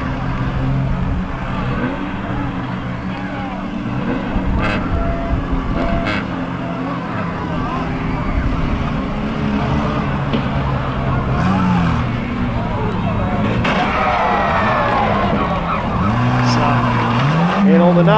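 Banger race cars' engines running on the track, their notes rising and falling as they rev, with a couple of revs climbing and dropping away near the end.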